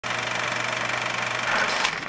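Film projector sound effect: a steady, rapid mechanical clatter over a low hum.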